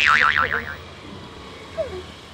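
Comic 'boing' sound effect: a springy tone that wobbles rapidly up and down and dies away within the first second, followed by low background noise.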